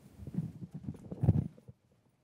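Microphone handling noise: irregular low thumps and knocks as a microphone is passed and picked up, stopping suddenly about one and a half seconds in.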